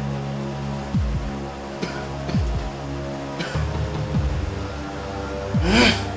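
Suspenseful film score: a steady low droning bed of held tones, broken by short sounds that fall in pitch a few times. A loud rising swell comes just before the end.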